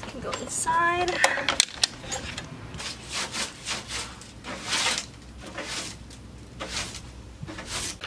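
Broom sweeping the floor of a stripped-out van in a run of short scratchy strokes. It follows a few knocks and a brief pitched squeak in the first two seconds.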